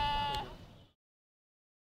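A woman wailing in grief: one high, held cry that fades out within the first second, and the sound then cuts off.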